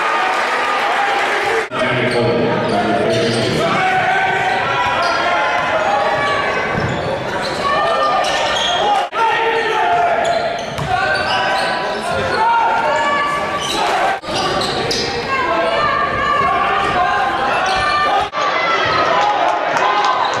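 Game sound in a school gym: a basketball being dribbled amid the voices of the crowd and players. The sound drops out briefly four times where the clips are cut together.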